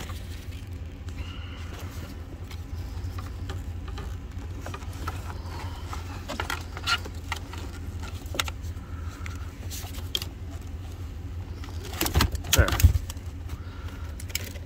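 Small plastic and metal clicks and rattles as the antenna plug is pressed and worked off the back of a BMW E90 radio unit, with a louder cluster of clicks and knocks near the end as it comes free. A steady low rumble runs underneath.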